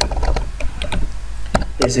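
Computer keyboard typing: a run of irregular, sharp key clicks, over a steady low hum.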